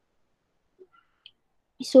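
Near silence broken by two faint short clicks about a second in, then a woman's voice starts speaking near the end.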